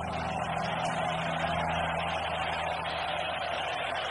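Concert crowd cheering steadily after the song ends, with a steady low hum underneath.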